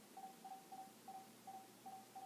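Near silence, with a faint single-pitched tone cutting in and out in short pulses about three times a second.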